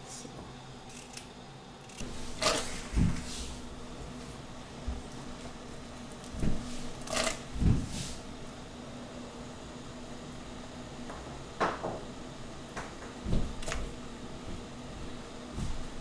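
Scattered knocks and clicks of kitchen prep work, a knife on a plastic cutting board and vegetables being handled, about seven in all with gaps between them. A steady low hum runs underneath.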